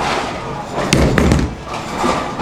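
Bowling ball released onto the lane: a hard thud about a second in as it lands, then a brief low rumble as it starts rolling.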